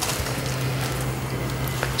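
Steady low electrical hum with background hiss, after a single click at the very start.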